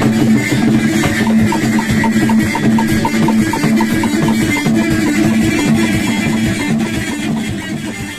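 Live Moroccan chaabi music: a loutar, a plucked long-necked lute, plays a driving melody over a bendir frame drum and small clay hand drums beating a fast, even rhythm. The music starts to fade toward the end.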